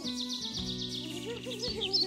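Gentle background music with sustained low chords, and a fast run of high chirps over it during the first second and a half, falling slightly in pitch.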